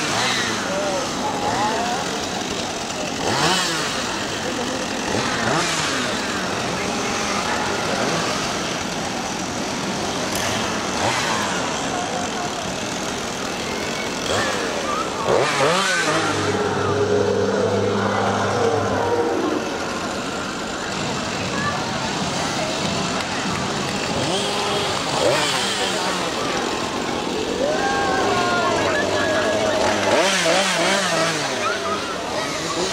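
Several chainsaws revving up and dropping back to idle over and over, a dense, buzzing engine sound with repeated surges, mixed with crowd voices and shrieks.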